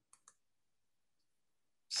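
Near silence broken by two faint, quick clicks close together near the start; a man's voice begins right at the end.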